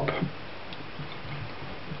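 A few faint ticks over a steady low background hiss.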